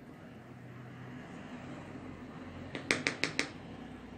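A wooden spoon stirring a thick, pasty cocoa and pomegranate mixture in a glass bowl, a soft scraping, with a quick run of about five sharp knocks of the spoon against the bowl about three seconds in.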